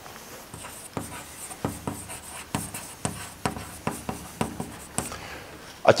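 Chalk writing on a blackboard: a quick, irregular run of short taps and scratches, a few strokes a second, as a word is written.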